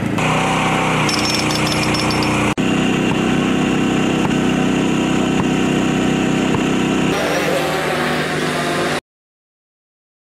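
Small engine of a hand-held rescue power tool running steadily. There is a brief dropout about two and a half seconds in, and the sound cuts off suddenly about a second before the end.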